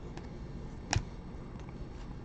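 2017 Donruss Optic football cards handled in the hands, with one short click about a second in as a card is flicked behind the stack, and a fainter tick just before.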